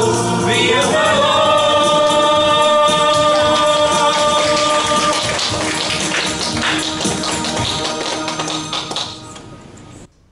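A worship song sung by male and female voices into microphones over an accompaniment with a beat; a long note is held through the first half, and the song fades out near the end.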